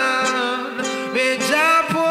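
Live acoustic music: an acoustic guitar playing under a wavering, gliding melody line carried without words.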